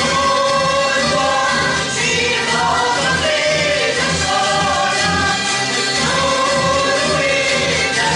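A Hungarian citera (zither) ensemble strumming a folk tune together, with the players singing along in unison.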